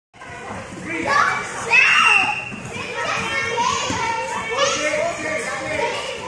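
Young children shouting and calling out as they play, several voices at once, the loudest a high-pitched cry about two seconds in.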